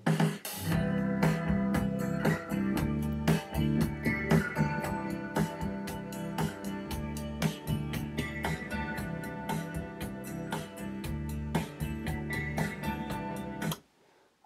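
Guitar-led music from an MP3 track played by a cheap USB MP3 decoder module through an amplifier and speaker. It starts the moment power is applied, runs with an even plucked rhythm, and cuts off suddenly near the end when the module's power is switched off.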